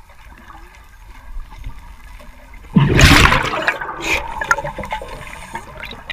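Scuba diver breathing underwater: a loud rush of exhaled bubbles from the regulator starts about three seconds in and tapers off over a second or two, over quieter underwater crackle.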